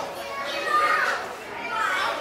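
Children's voices calling and chattering, several high-pitched voices overlapping.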